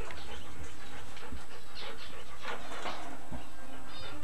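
A dog panting, a few short breaths over a steady background hiss.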